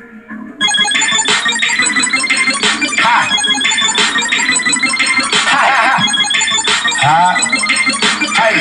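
Loud music with a beat and bright, ringing electronic tones, starting abruptly about half a second in after a few quiet low tones.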